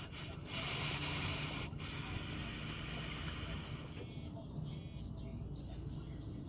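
A long breathy hiss, a person exhaling a hit of vapour from a dab rig, loudest near the start and stopping about four seconds in.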